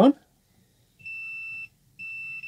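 Multimeter continuity tester beeping: one steady high beep of well over half a second, then a second beep starting just at the end. The beep signals a closed circuit between the probed connector pin and a wire of the microphone cable.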